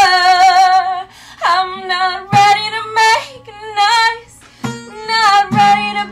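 A woman singing solo with a strummed acoustic guitar. Her phrases hold long notes with vibrato and break off briefly about a second in and again past the four-second mark.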